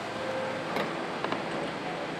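New York City subway train in motion: a steady noise of the cars running on the rails, with a few faint clicks in the middle.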